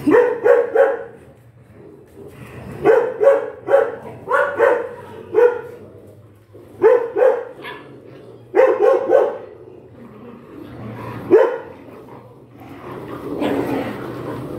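Dalmatian puppies barking in quick clusters of short barks, repeated over and over through their rough play, with one sharp single bark about eleven seconds in.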